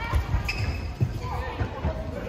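Badminton play on a court mat: shoes thudding and squeaking as the players move, with sharp racket strikes on the shuttlecock, in a large hall.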